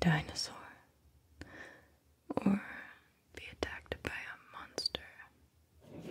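A woman whispering close to the microphone in short phrases with pauses between them.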